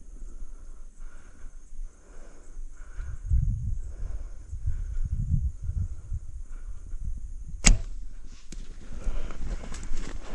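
Compound bow shot: a single sharp snap as the string is released, about three-quarters of the way in. Before it, a soft sound repeats about every two-thirds of a second over low bumps. After it come scattered rustles and clicks.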